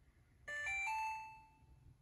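Maytag washer's control panel sounding its electronic chime: three quick rising notes, the last one held and fading within about a second, as the language-selection menu comes up on the display.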